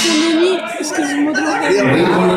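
People talking and calling out in a large hall: voices and crowd chatter, heard continuously and echoing a little.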